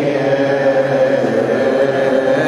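Coptic Orthodox liturgical chant: a sung voice holding a long melismatic note, its pitch shifting slightly about a second in.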